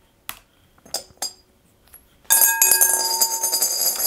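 A few light laptop key clicks, then about two seconds in a coin suddenly rattles around inside a large glass bowl, setting the glass ringing with several clear high tones.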